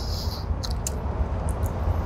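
Steady low rumble of outdoor background noise, with a faint high hiss that stops about half a second in and a few faint clicks.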